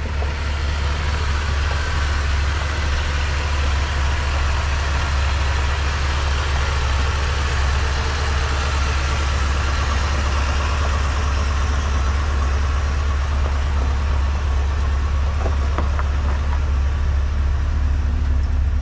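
Ford F-350 Super Duty's 7.3-litre gas V8 idling steadily, heard from underneath the truck close to the engine.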